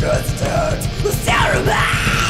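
Metal song with fast, driving drums and a harsh yelled vocal that swoops up and down in pitch over the band.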